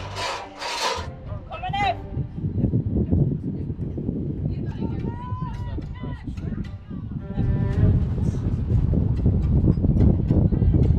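Low, flickering rumbling noise on the microphone that grows louder in the last few seconds, with brief faint voices over it.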